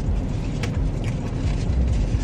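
Car engine idling, a steady low rumble heard inside the cabin, with a faint click less than a second in.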